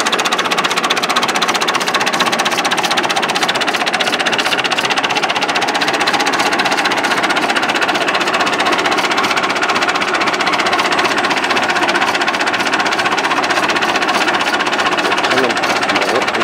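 Massey Ferguson MF 165 tractor engine running at idle with a fast, even clatter.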